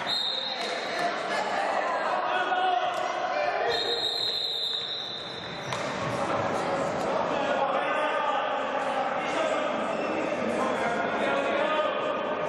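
Indoor hockey in a sports hall. Sticks clack against the ball and players' voices carry in the echoing hall. A referee's whistle blows twice: a short blast at the start and a longer one of about two seconds beginning about four seconds in.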